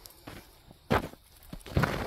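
Footsteps on recycled asphalt pavement with loose grit on it: small scuffs, then two heavier steps, about a second in and near the end.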